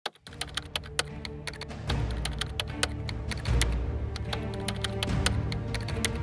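Keyboard-typing sound effect, a quick irregular run of clicks, over background music whose bass comes in about two seconds in.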